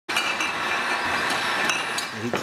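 Brewery bottling machinery running: a steady mechanical clatter with a few sharp clicks, cutting in suddenly.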